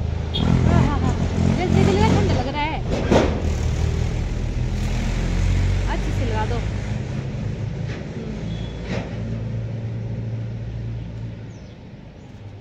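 A steady, low engine-like drone runs throughout and fades near the end. Over it, a voice makes wavy, babbling sounds in the first few seconds and again briefly around six seconds.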